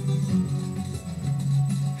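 Guitar music playing, plucked notes over a steady low bass.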